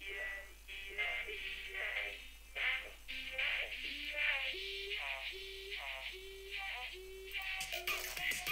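Vocoded synth lead playing a short melodic phrase in syllable-like, talking notes, heard on its own without drums or bass; toward the end it settles into short repeated notes about once every 0.7 seconds.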